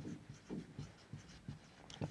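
Felt-tip marker writing on a whiteboard: a series of faint, short strokes as a word is written by hand.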